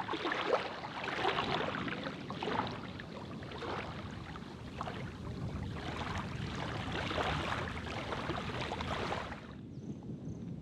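Shallow seawater lapping and splashing at the shoreline, in irregular splashes. The sound drops away suddenly shortly before the end.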